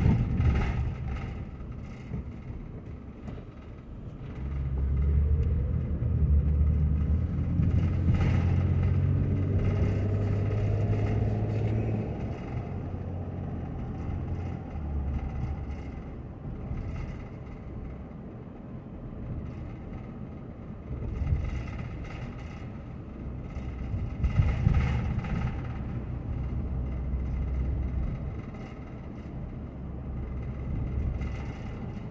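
Car engine and tyre noise heard from inside the cabin while driving. The engine gets louder and climbs in pitch from about four seconds in as the car picks up speed, then settles back to a lower steady rumble, with another swell near the end.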